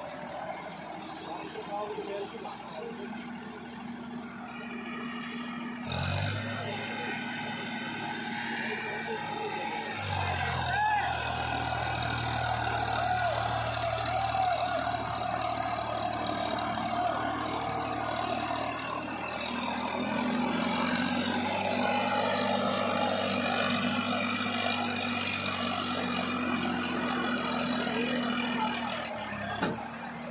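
Farmtrac 45 Supermaxx tractor's diesel engine straining under load as it tries to climb out of a sandy trench towing a trolley. The revs go up about six seconds in and rise again at about ten seconds, then hold steady.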